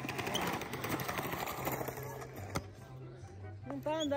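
Skateboard wheels rolling on a concrete skatepark floor, a rough rattling rumble that dies away about two and a half seconds in, followed by a single click.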